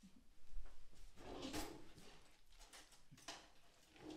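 Clicks, knocks and scraping of a spatula working a mayonnaise-dressed salad in a glass mixing bowl, loudest about a second in and again near the end, with one quiet spoken "okay".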